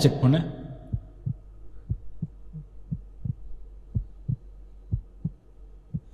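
Heartbeat sound effect: paired low thumps, lub-dub, about one beat a second, starting about a second in over a steady low hum.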